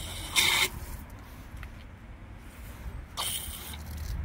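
Outdoor standpipe water tap being turned on: two short hissing bursts of water from its bare threaded outlet, about half a second in and again near the end.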